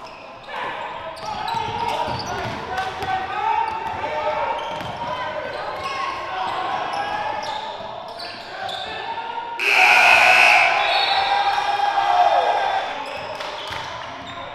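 Live gym sound of a basketball game: a ball bouncing on the hardwood and players' and spectators' voices echoing in the hall, with a louder burst of shouting about ten seconds in.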